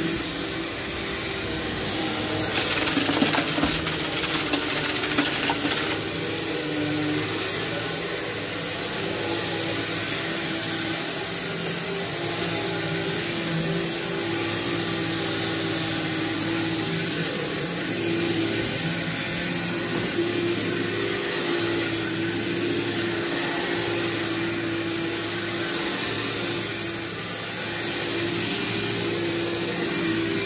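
Upright vacuum cleaner running over heavily soiled carpet, a steady motor hum under the hiss of its airflow. A few seconds in it turns louder and crackly for a few seconds as grit is sucked up.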